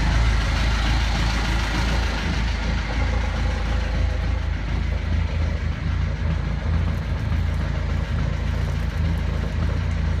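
Naturally aspirated Perkins diesel engine idling steadily with an even low rumble, on its first run after winter storage.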